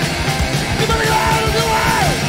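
Hardcore punk recording: distorted electric guitar, bass and drums playing continuously, with shouted lead vocals.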